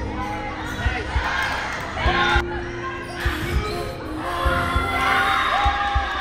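Indoor volleyball rally: the ball thuds off players' arms and the gym floor again and again, with spectators shouting and cheering. The shouting swells twice, the second time as the point is won.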